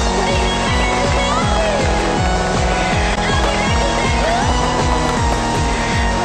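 Electronic background music with a fast, steady bass beat and gliding synth tones above it.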